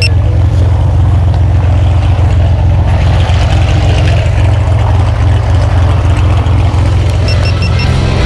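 Steady low drone of a propeller aircraft's engine running, with background music mixed over it.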